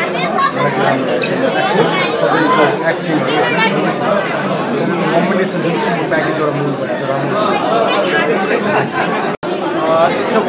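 A man speaking over the steady chatter of a crowd in a large hall. The sound drops out for an instant about nine seconds in.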